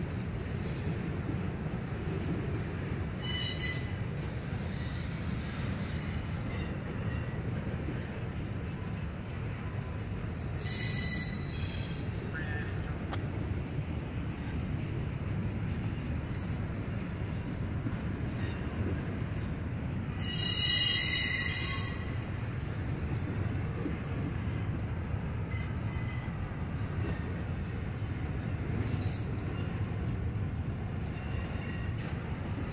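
Double-stack intermodal freight train rolling past, with a steady low rumble of wheels on rail. High-pitched wheel squeals come briefly about 4 and 11 seconds in, and a longer, louder squeal about 21 seconds in.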